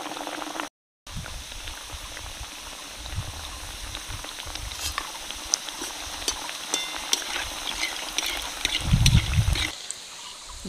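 Jibe goja dough pastries deep-frying in hot oil in an aluminium kadai: a steady sizzle with scattered crackles. The sound drops out briefly about a second in, and there are dull low bumps, the strongest near the end.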